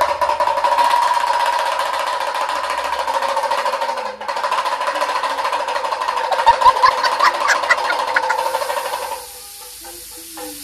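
A small hand-held damru drum shaken fast, a continuous rapid rattle of strikes on the drumheads that stops suddenly about nine seconds in.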